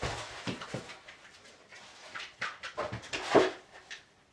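Knocks and scrapes of a wooden crate being stood on end, then a dog jumping up onto it with its claws on the wood; the loudest thump comes about three and a half seconds in.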